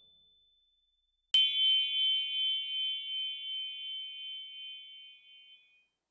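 A single bright, bell-like ding about a second in, a high ringing tone that wavers slightly as it fades away over about four seconds.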